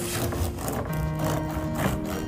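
Background music with held notes. Under it, a serrated bread knife saws through the firm crust of a wholegrain loaf, giving short crunching strokes.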